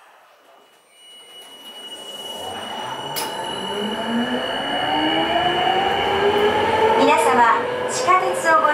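Sapporo Municipal Subway Namboku Line 5000-series rubber-tyred train pulling away: the traction motor whine rises steadily in pitch as the running noise builds. A steady high tone runs through most of it.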